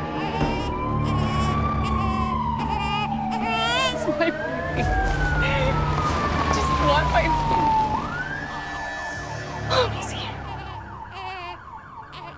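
Police car siren wailing, its pitch sweeping slowly up and down several times, over a low rumble; it fades somewhat near the end.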